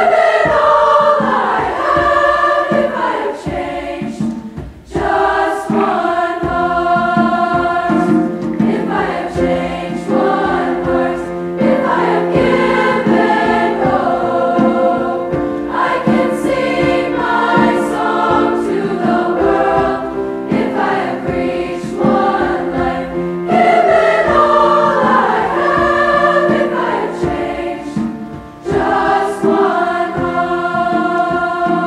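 Large high school choir singing, phrase after phrase, with short breaks about five seconds in and again near the end.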